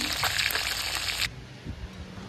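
Pieces of snakehead fish marinated with lemongrass and chili frying in hot oil in a wok: a steady sizzle with crackles that cuts off suddenly a little over a second in.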